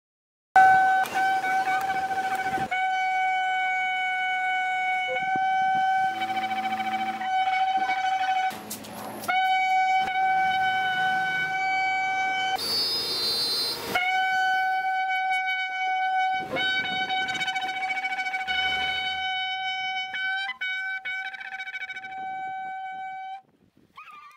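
A long, spiralled Yemenite-style shofar blown in one steady, sustained note that is held for about twenty seconds. The note is broken twice by short gaps of noise and stops suddenly near the end.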